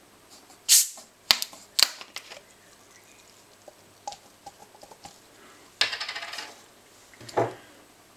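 Screw cap twisted off a plastic bottle of carbonated orange soda: a short, loud hiss of escaping gas, then two sharp clicks from the cap. Later, a longer rustling hiss and a brief clatter as the bottle and glass are handled.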